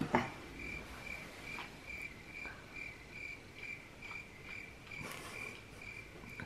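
Cricket chirping: one high, evenly pulsed chirp repeating about two and a half times a second over quiet room tone, starting just after a soft click at the opening.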